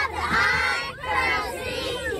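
A group of young girls shouting a cheer together in chanted phrases.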